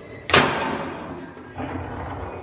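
Foosball table in play: one loud, sharp knock about a third of a second in, ringing on briefly, from the ball or a rod being struck hard, then quieter rattling of play near the end.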